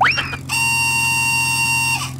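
Cartoon sound effects: a quick rising whistle-like glide, then a steady, unwavering buzzing tone that holds for about a second and a half and cuts off, over a constant low hum.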